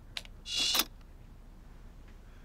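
A laptop's CD drive ejecting: a click, then a brief loud mechanical whirr as the tray slides out about half a second in.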